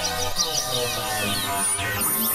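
Experimental electronic music played on hardware synthesizers: held drone tones under many short, high chirping pitch sweeps, with the low bass drone cutting out just after the start.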